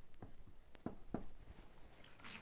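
Dry-erase marker writing on a whiteboard: a series of short, faint strokes as a figure is written and underlined.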